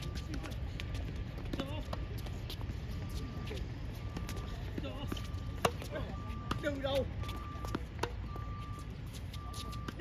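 Tennis balls struck by racquets in a doubles rally: a string of sharp pops a second or two apart, the loudest about five and a half seconds in. Voices are heard between the shots.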